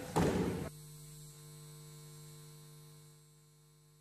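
A short loud burst of noise that cuts off abruptly under a second in, followed by a steady low electrical mains hum on the broadcast audio, which gets quieter about three seconds in.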